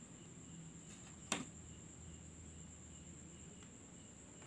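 Laptop optical drive being slid out of its bay: a single sharp click just over a second in, over a faint steady hum and a thin high whine.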